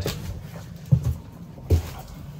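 Two footsteps, a short low thump about a second in and another near the end.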